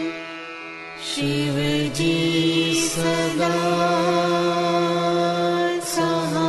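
Devotional mantra chanting sung over a steady held drone. The voices drop away briefly at the start, come back in about a second in, and begin a new line near the end.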